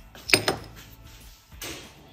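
Small metal EGR blanking plates being handled on a workbench: one sharp clack with a short ring about a third of a second in, a lighter click just after, and a brief brushing sound near the end.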